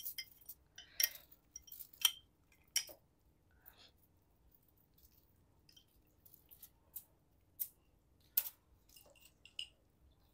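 A fork and chopsticks clicking against plates and a bowl while noodles are lifted and served: a few sharp single clicks scattered through, with faint small sounds between them.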